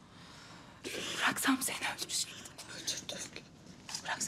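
A woman's hushed, whispered speech, breathy and quick, starting about a second in after a soft breath.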